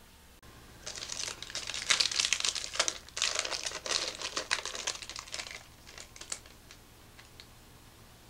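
A sealed pack of 1992 Country Classics trading cards being torn open by hand: its shiny plastic wrapper crinkles for about four and a half seconds, starting about a second in, then trails off into a few light ticks.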